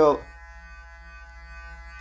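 Clarisonic Mia Prima sonic brush with its foundation brush head running against the face, a steady, even electric buzz with a clear pitch.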